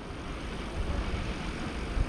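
Steady low rumble of street traffic from a car driving ahead, with no distinct events.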